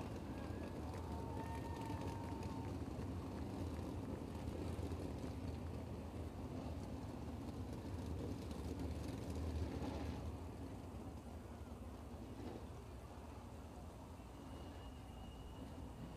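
Faint, steady low rumble of sprint car engines running slowly around the dirt track.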